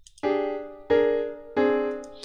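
MuseScore's sampled piano playing back a three-note melody, A flat, B flat, A flat. Each note is struck sharply about 0.7 s after the last and fades away, and the middle note is a step higher.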